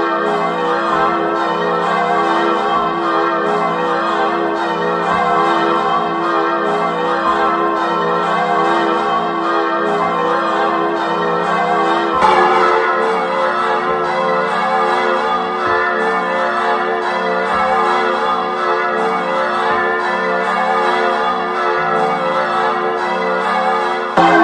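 Carillon music: many tuned bells ringing together in a dense, sustained wash, with a louder, brighter set of strikes about twelve seconds in.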